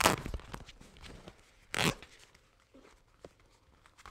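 Duct tape crinkling and rustling as cut flaps are folded down by hand, in two short bursts, one at the start and one about two seconds in.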